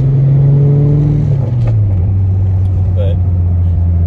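Car engine droning inside the cabin while driving; about a second and a half in its pitch drops as the revs fall, then it runs on steady.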